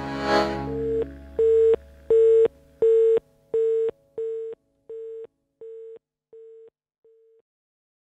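The music ends on a final accent, then a telephone busy tone beeps about ten times, three beeps every two seconds, growing fainter until it dies away.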